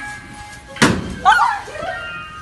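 A single loud slam a little under a second in, with a short low ringing after it, followed by a brief burst of a person's voice.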